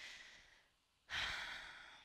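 A woman breathing audibly: one breath trails off at the start, then a long sighing exhale begins sharply about a second in and slowly fades.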